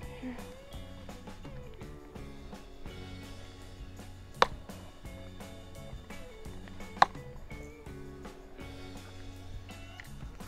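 Background music with steady held notes, broken twice near the middle by a sharp plastic click, about two and a half seconds apart: the snap latches of a clear plastic tackle utility box being unclipped.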